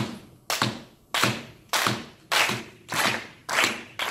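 A steady rhythm of sharp percussive strikes, evenly spaced a little under two a second, each with a short ringing tail.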